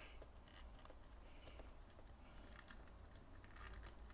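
Near silence with faint small clicks and light scraping as a plastic and die-cast action figure is handled and seated on a toy motorcycle.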